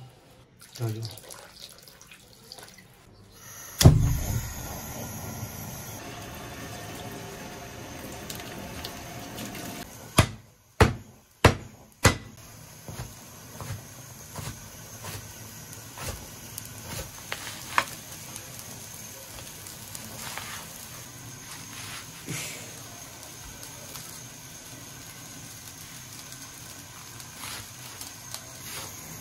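Water pouring and splashing into a wok holding a slab of pork belly, followed by a steel cleaver chopping scallion whites on a wooden board: four sharp knocks close together, then lighter, irregular taps.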